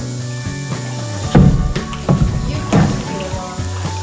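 Background music with sustained tones plays throughout. About a second and a half in come three loud, low knocks less than a second apart, knocks against the hollow plastic kayak hull.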